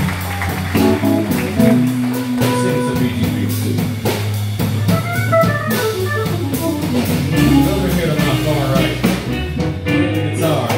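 Live band playing an instrumental groove: guitar over a steady bass line and drums, with notes changing every second or so.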